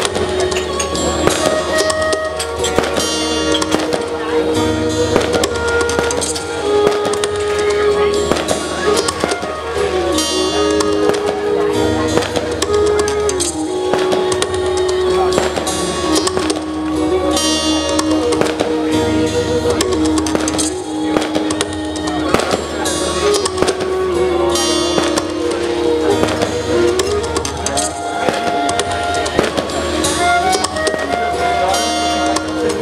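Live music: a concert flute plays a slow melody of long held notes over a steady low drone, with frequent sharp clicks.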